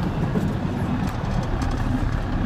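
Straight truck with a 6-speed manual gearbox cruising slowly in third gear, its engine and drivetrain giving a steady low rumble heard from inside the cab.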